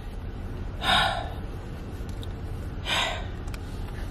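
A woman takes two heavy breaths about two seconds apart, sighs of someone feeling overwhelmed, over a low steady hum.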